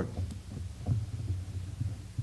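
A steady low electrical hum in the room and recording, with a few faint low thumps.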